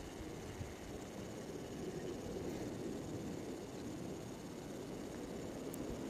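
Faint, steady background hiss of outdoor ambience picked up by a compact camera's built-in microphone, with no distinct events.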